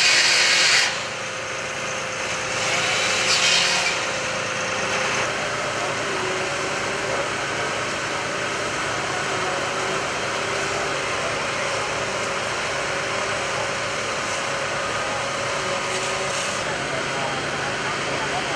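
Handheld power cutter biting into a metal roller shutter in two bursts, one right at the start and a longer one about three seconds in, over the steady drone of running fire-engine engines and pumps.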